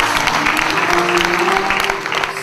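Audience applause breaking out just as a held sung note ends, many hands clapping, with music still sounding faintly underneath.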